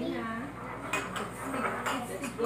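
Kitchen utensils clinking against dishes and the pan while cooking: two sharp clinks, about a second in and near the end.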